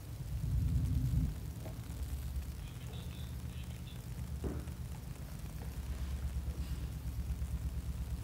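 Low, steady background rumble and hum coming through a video call's audio, a little louder in the first second.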